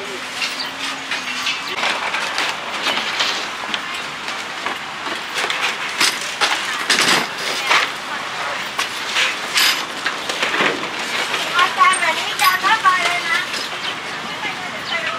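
Metal clatters and knocks of a folding table's tubular steel legs being swung open and set down on pavement, a few sharp knocks scattered through, over background voices.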